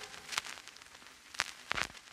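The last of the music dies away at the start, then a few faint, sharp taps follow, about three of them spread through the rest.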